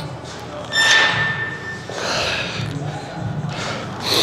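A metal knock with a short ringing tone about a second in, as the weight stack of a cable machine clanks during a set of single-arm cable tricep pushdowns. Two soft breathy exhales follow.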